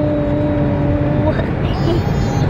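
Steady road and engine rumble inside a moving car's cabin. A single held tone sounds over it and stops a little past the middle.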